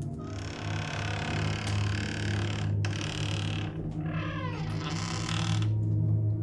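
Wooden door creaking as it is slowly pushed open, in three drawn-out scraping creaks, the last falling in pitch. Underneath is a low sustained music drone.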